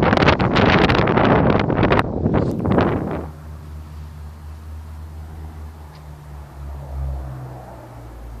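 Loud, gusting wind buffeting the microphone for about three seconds, then a cut to a much quieter, steady low hum of a distant engine that slowly fades.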